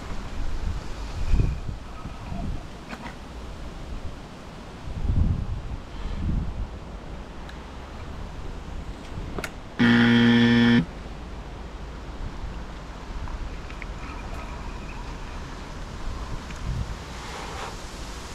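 Wind buffeting the microphone in low rumbling gusts, with a single steady buzzing tone, horn-like, lasting about a second around ten seconds in.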